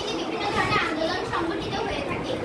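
Schoolgirls' voices talking, more than one at a time.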